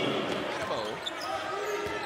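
A basketball bouncing on a hardwood court in a large hall, with faint voices in the background.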